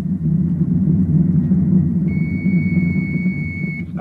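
Low, steady rumble from an old-time radio drama's spaceship sound effect. About halfway through, a steady high electronic beep-like tone comes in and holds for under two seconds, stopping just before the ship's radio call begins.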